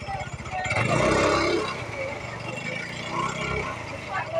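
A motor scooter's small engine running close by with a steady low beat, louder for a moment about a second in, under people's voices.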